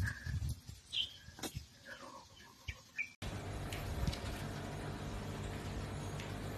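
A few short bird chirps over uneven low rumbling outdoors, with one sharp click about one and a half seconds in. After an abrupt cut just past three seconds, a steady low hum of indoor room noise.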